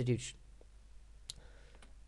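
A single sharp click at the computer a little past halfway, in the quiet after a word ends.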